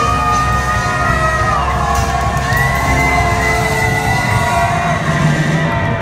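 A live band of electric guitars, bass and drums holding out long sustained notes, with a crowd cheering and shouting over it.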